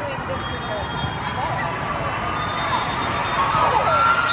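Indoor volleyball rally on a hardwood court: sneakers squeaking in short chirps as players move, and sharp hits of the ball, over spectator chatter in a large hall. A held high tone comes in louder near the end.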